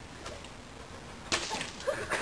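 A water balloon bursting with a sharp splat on a tiled floor about a second and a third in, followed by a short spatter of water.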